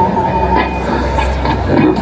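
The last ringing tones of a live acoustic guitar song dying away over a low, steady rumble and a noisy wash of sound.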